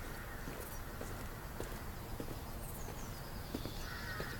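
Unhurried footsteps of hard-soled shoes on a stone garden path, a sharp step roughly every half second to second, over a steady outdoor background with a few faint bird chirps.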